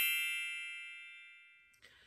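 A bright, bell-like chime sound effect ringing out and decaying, fading away about a second and a half in.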